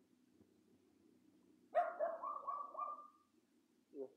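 A dog barking: a quick run of about four barks about two seconds in, lasting just over a second, with one more short bark at the very end.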